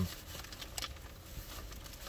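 Faint crinkling and a few light clicks of paper food wrappers being handled inside a car, over a low steady rumble.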